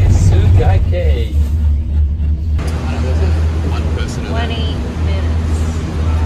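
Steady low rumble and hum inside a moving gondola lift cabin, with voices talking over it.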